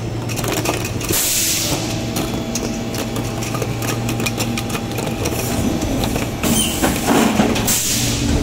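Preform injection moulding machine with a 72-cavity mould running its cycle: a steady hum with scattered clicks and knocks, and a burst of hiss about a second in and again near the end as the mould opens.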